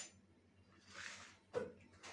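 Quiet handling sounds of a small spoon and containers on a wooden table while spooning wood ash: a soft hiss about a second in, then a single light click.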